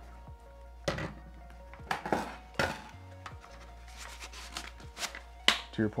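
Pistol magazines handled and set down on a wooden workbench: a scattered series of clacks and knocks, the loudest about five and a half seconds in, over quiet background music.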